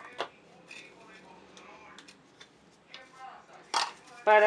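Clear plastic cups handled and set down on a tabletop: a few light plastic clicks and knocks, the loudest one near the end.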